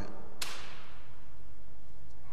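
A single sharp click about half a second in, with a short ringing tail from the room.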